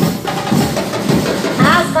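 Music with drums and percussion, with a commentator's voice coming in near the end.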